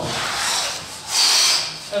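Clothing and sneakers rubbing and sliding on foam exercise mats as several people lower themselves from sitting to lying; it swells loudest a little past halfway, then fades.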